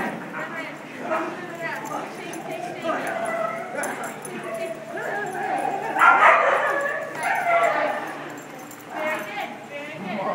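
A small dog making repeated short calls while tugging on a rope toy, with people's voices in the background. The loudest stretch comes about six seconds in.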